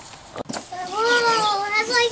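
A young child's excited, drawn-out high-pitched vocal exclamation, no words, gliding up and down in pitch as a toy box is uncovered, after a brief rustle about half a second in.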